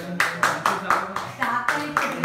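Hand clapping in a quick, fairly even run of about four to five claps a second, starting just after the beginning, with voices talking underneath.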